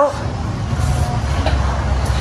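A steady low background rumble, with one faint click about one and a half seconds in.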